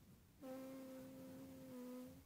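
A person humming one steady note for under two seconds, starting about half a second in and dipping slightly in pitch near the end.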